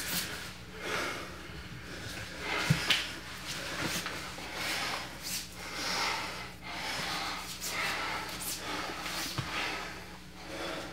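Two grapplers breathing hard in and out while they wrestle, roughly one breath a second, with a couple of dull knocks as bodies shift on the mat.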